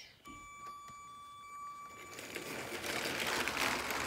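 LEGO Power Functions motorized train setting off: a steady high electric whine for about two seconds as power is applied, then a growing rattling hum of the motor and plastic wheels running along the LEGO track as the train picks up speed.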